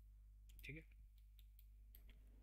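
Faint computer mouse clicks, about five or six sharp ticks spread unevenly over two seconds, over a steady low electrical hum.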